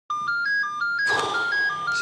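Mobile phone ringtone: a quick melody of short electronic beeps stepping up and down between a few notes, about six a second. A rushing noise joins under it about halfway through.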